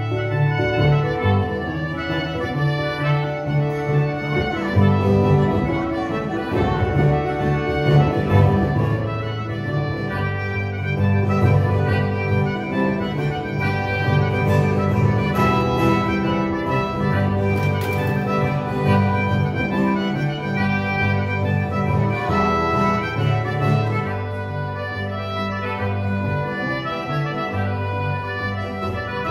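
Live instrumental folk music led by a button accordion, with plucked string instruments, playing a steady tune over a repeating bass line.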